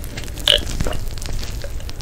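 Close-miked gulping and swallowing of a drink from a glass, a series of short wet gulps with the loudest about half a second in.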